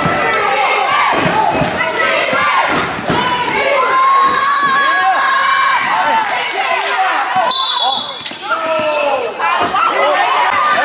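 A basketball dribbled on a hardwood gym floor, with sneakers squeaking as players cut and drive. A short, shrill referee's whistle comes about seven and a half seconds in.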